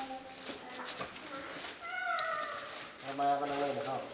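Faint voices: a short, high-pitched call that falls slightly in pitch about halfway through, then a low, drawn-out voice near the end.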